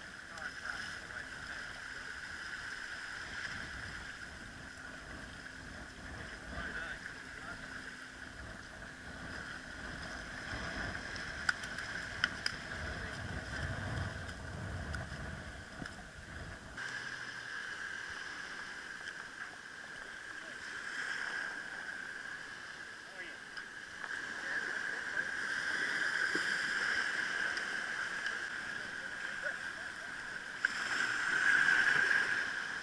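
Outdoor shoreline ambience: water washing in the shallows with low wind rumble on the microphone that stops abruptly about 17 seconds in, and a steady high tone running throughout.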